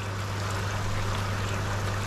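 Water bubbling and churning through a moving-bed filter chamber packed with plastic filter media, aerated gently so the media turns over slowly, with a steady low hum underneath.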